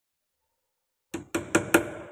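Silence, then about a second in, four quick sharp taps on a small wood screw, driving its point into the wooden door frame through a deadbolt strike plate to start the thread before it is screwed in.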